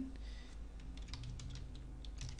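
Computer keyboard being typed on: soft, irregular key clicks over a steady low hum.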